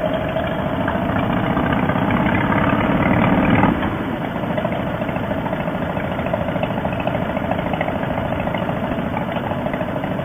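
2005 Harley-Davidson Softail Fat Boy's V-twin engine running under way, heard from the rider's seat. It grows louder over the first few seconds, drops suddenly about four seconds in, then runs on steadily.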